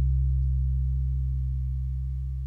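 The final chord of a rock song left ringing: low bass guitar and electric guitar notes sustaining through the amps and slowly fading away.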